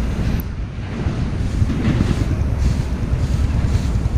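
Wind buffeting the microphone: a continuous low rumble.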